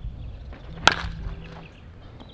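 A wooden baseball bat hitting a baseball: one sharp crack about a second in, with a brief ring after it.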